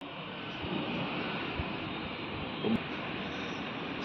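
Steady urban background noise, an even hum and hiss with no voices, and one faint knock near the end.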